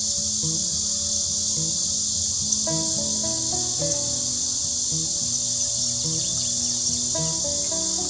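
Steady, high-pitched drone of an insect chorus, under background music of low notes that step along every half second or so.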